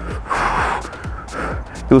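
A man breathing hard while exercising: a long breath out, then a shorter one.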